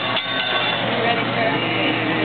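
Busy restaurant din: overlapping voices over a steady hiss and hum, with a couple of sharp clicks just at the start.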